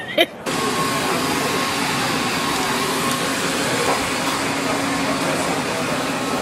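Steady rushing noise, like air moving through ventilation, with a faint low hum in it. It cuts in suddenly about half a second in, after a brief laugh.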